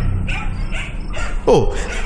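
Dogs barking faintly in the background over a low, steady music drone, with a short sound falling steeply in pitch about a second and a half in.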